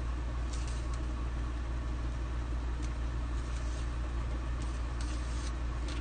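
Steady low background hum, with a few faint scattered rustles and clicks from a plastic chalk transfer stencil being handled and pressed on a sign board.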